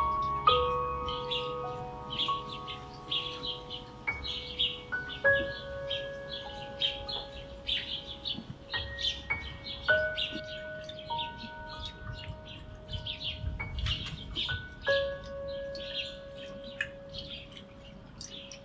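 Small birds chirping busily and continuously, with clear bell-like chime tones ringing out one at a time and slowly dying away.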